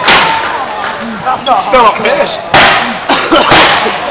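Folding chair slamming into a wrestler: three loud hits, one at the start and two about a second apart near the end. Crowd shouting in between.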